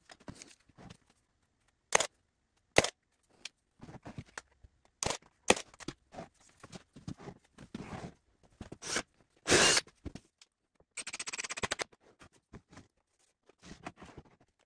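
Plywood jig pieces handled on a wooden workbench: scattered knocks and taps as the boards are set down and fitted together, a short scrape a little before ten seconds, and a longer scraping slide about a second later.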